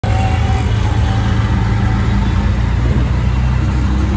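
Auto rickshaw's single-cylinder engine running steadily under way, heard from the open passenger cabin along with road and traffic noise.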